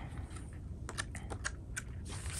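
Pages of a thick paper notebook being flipped by hand: a run of light, irregular paper ticks and rustles.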